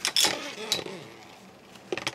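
Beyblade spinning tops clashing in a plastic stadium: a few sharp metallic clicks right at the start and another about three quarters of a second in. The sound then fades to a faint hiss as one top wobbles over and stops.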